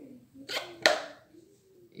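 Two sharp knocks, the second louder: an orange spatula knocking against a pink plastic bowl while whipped cream is scooped out onto a rolled sponge.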